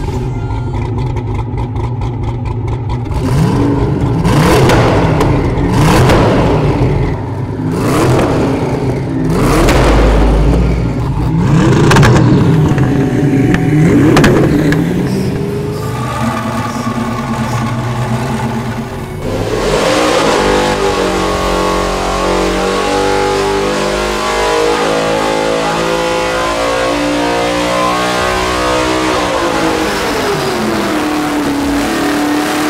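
Hennessey Venom F5 V8 engine revved repeatedly, climbing and dropping about every two seconds. It then holds a long high-rev run whose pitch shifts in steps, falling away near the end.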